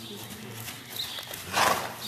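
A horse blowing out hard through its nostrils once: a short, breathy snort about a second and a half in.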